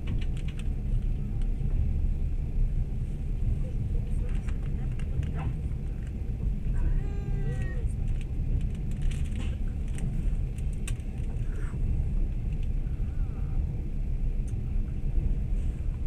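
Passenger train running: a steady low rumble from the carriage rolling on the rails, with a few light clicks along the way.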